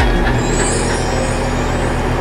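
A steady low mechanical hum with a fast, even pulse sets in about half a second in. A faint high whine wavers above it for about a second.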